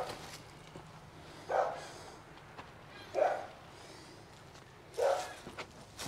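A dog barking, single barks repeated four times, one every one and a half to two seconds.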